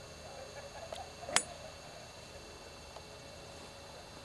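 A golf club striking the ball out of the rough: one sharp click about a second and a half in, over faint steady background noise.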